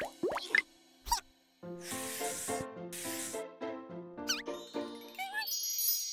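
Cartoon sound effects over children's background music: a short pop about a second in, then after a brief silence a bouncy melody with two bursts of hiss, quick gliding squeaks, and a chiming jingle near the end.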